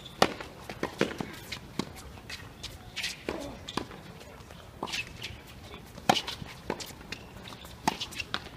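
Tennis balls struck by rackets in a doubles rally on a hard court: a string of sharp hits about a second apart, with ball bounces and players' footsteps between them.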